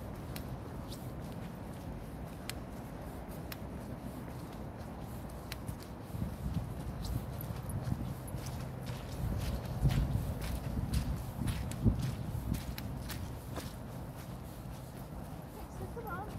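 Wind buffeting the phone's microphone in a low rumble that swells in gusts near the middle, with scattered footsteps on wet grass.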